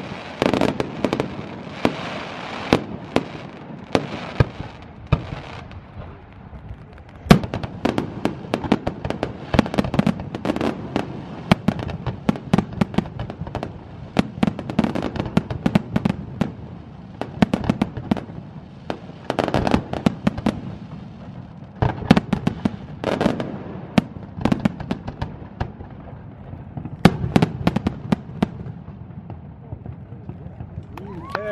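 Fireworks display: aerial shells going off in a long run of sharp bangs, several a second in the busiest volleys, with crackling between them.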